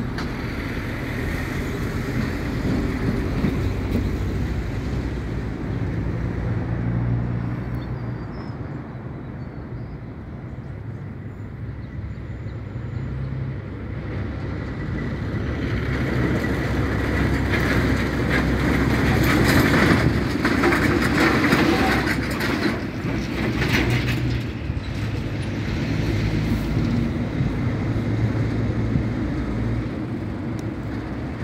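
Low engine hum and road noise from passing heavy vehicles, swelling to its loudest about twenty seconds in and then easing off.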